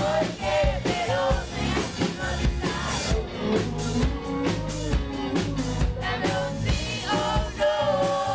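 Live rock band playing: a man singing over electric guitar and a drum kit with a steady beat.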